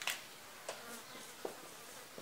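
Marker pen writing on a whiteboard: faint strokes with a few light, short ticks as letters are drawn.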